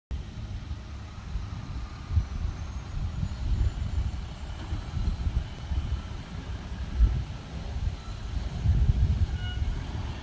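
Garbage truck's engine running down the street: an uneven low rumble, with a couple of louder thumps about two seconds and about seven seconds in.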